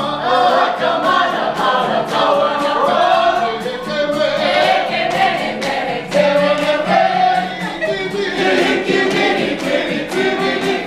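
A mixed group of men's and women's voices singing a Maori song together, with a steady beat of sharp hand claps keeping time.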